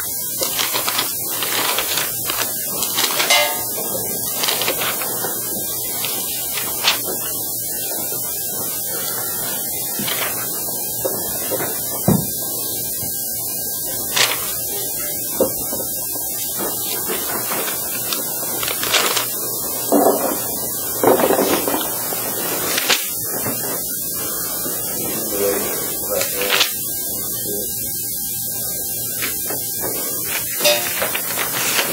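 Room tone of a quiet classroom: a steady hiss and electrical hum with a faint steady whine. Scattered small clicks and knocks and a few brief soft rustles sound over it.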